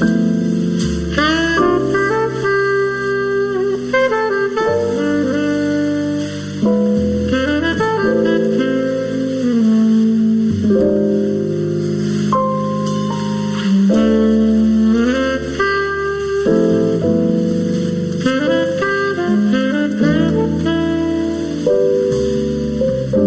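Slow, relaxed jazz: a saxophone plays the melody in long held notes over piano accompaniment.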